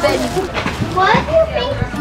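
Young children's voices talking and calling out, with no other distinct sound.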